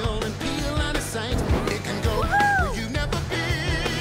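Upbeat rock-style song with a steady drum beat and sung vocals; about halfway through, a held high note slides up and then falls away.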